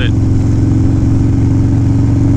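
2016 Harley-Davidson Low Rider S's Twin Cam 110 V-twin with aftermarket exhaust, running steadily at a cruise, heard from the rider's seat.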